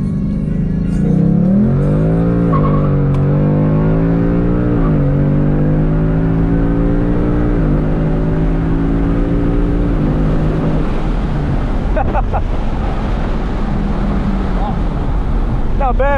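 Ford Mustang GT's 5.0 Coyote V8 under a full-throttle pull, heard from inside the cabin. The revs climb and drop three times as the 10R80 ten-speed automatic upshifts fast, then fall back to a steady cruise about eleven seconds in.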